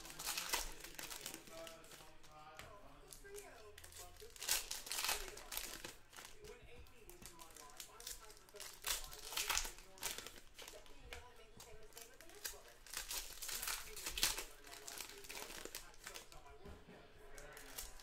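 Trading-card box packaging crinkling in short, irregular bursts a few seconds apart as the box is handled and opened by hand.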